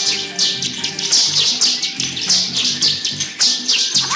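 Nunchaku whipping through the air, film sound effects: quick swishes, about three a second. A film score plays low underneath.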